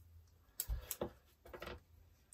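Washi tape being pulled off its roll and torn by hand: a few short, sharp crackles and rips.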